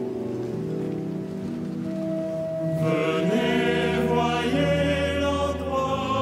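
A held organ chord, then about three seconds in a small choir begins chanting the psalm over a sustained deep organ note, in a large reverberant cathedral.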